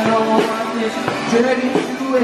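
Rock band playing loudly: strummed guitar over a steady drum beat, with singing.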